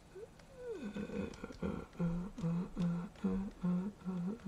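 A man humming to himself: a sliding note, then a run of short, evenly spaced low notes, about two or three a second. A few faint clicks sound under it.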